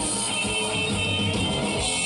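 Live electric blues band playing through the PA, guitar over drums with repeated sharp drum hits, heard from among the audience at an open-air stage.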